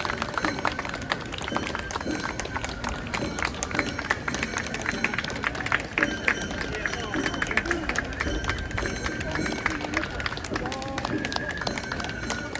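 Street crowd of spectators chattering among themselves in an overlapping babble, with many short sharp clicks and taps scattered through it.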